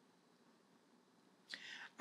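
Near silence: room tone, then about one and a half seconds in a short, soft intake of breath just before speech.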